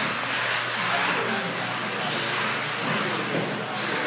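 Radio-controlled 4WD buggies running around an indoor carpet track, a steady mix of motor and tyre noise, with people talking over it.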